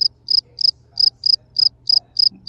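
A cricket chirping loudly in short, evenly spaced high chirps, about three a second.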